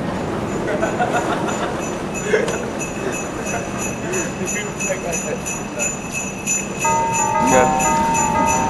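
Jingle bells shaking in a steady rhythm, with faint voices underneath; about seven seconds in, sustained musical notes join them.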